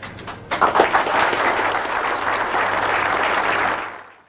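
A roomful of people applauding: a few scattered claps about half a second in swell into steady applause, which cuts off abruptly near the end.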